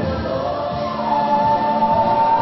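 A choir singing a gospel song, with a high note held from about a second in.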